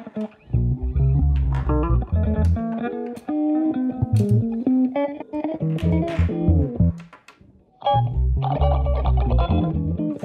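Multitracked instrumental played on an Epiphone Sheraton II semi-hollow electric guitar, four overdubbed parts of plucked melody over low bass notes. The playing thins to a brief pause about seven seconds in, then picks up again.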